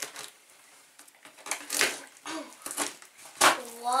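Taped cardboard parcel box being torn open by hand: packing tape ripping and cardboard flaps rustling in several short bursts, the loudest near the end.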